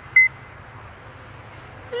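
A short, high electronic beep from a mobile phone just after the start, the second of a double alert tone, then only a faint steady hum.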